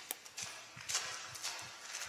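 Magic: The Gathering cards being tossed onto piles on a playmat: a series of soft card slaps and slides, about five in two seconds.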